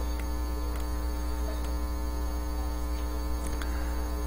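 Steady electrical mains hum: a low buzz with many evenly spaced overtones, unchanging throughout.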